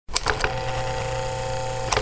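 A steady machine-like hum, set off by three quick clicks at the start and another pair of clicks near the end.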